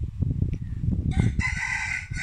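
A rooster crowing, beginning about a second in with one long, held call, over a low rumble.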